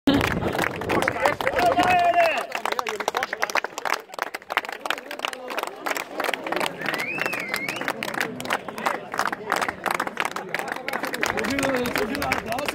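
A small group clapping steadily, with voices and shouts mixed in. There is a shout about two seconds in.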